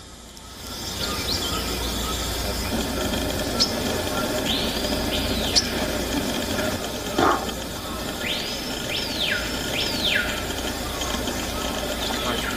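Outdoor natural ambience: a steady hiss of insects, with a few bird whistles that rise, hold and fall sharply, in the middle and again near the end. A brief dull thump comes a little after the middle.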